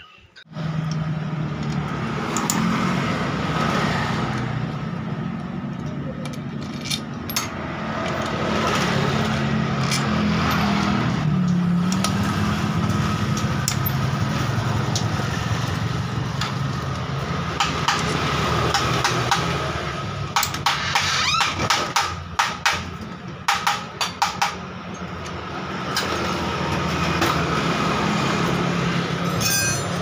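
Metal hand wrench turning the bolts of a Honda Beat FI scooter's CVT cover, with clusters of sharp metallic clicks in the second half, over a steady low drone.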